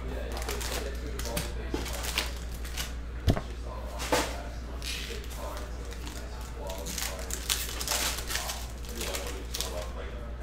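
Hands handling a trading-card hobby box and its packs: packs pulled out of the cardboard box and a foil card pack torn open, making rustling, crinkling and clicking sounds, with a sharp knock about three seconds in.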